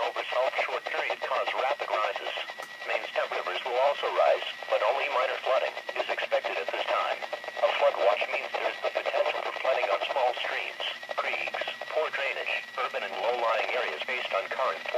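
NOAA Weather Radio broadcast voice reading a flood watch statement, heard through the small speaker of a Midland weather alert radio.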